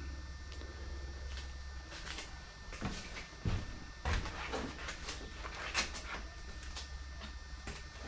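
Quiet room tone with a low steady hum that fades after a couple of seconds, and a few faint, irregular knocks and clicks of handling.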